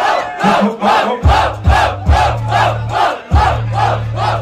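Crowd chanting in unison, a short shout about three times a second. A hip-hop beat's bass and kick drum come back in underneath about a second in.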